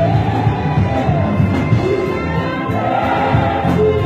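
Live gospel choir singing a song in isiZulu in several voices, over band accompaniment with a steady bass line.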